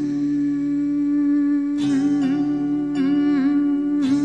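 Film song music: a woman's voice hums the melody in long held notes with small wavering turns over a steady low accompaniment.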